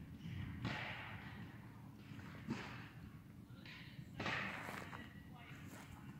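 Faint rustling of large pine cones being handled and moved about in the hands, with a soft knock about two and a half seconds in.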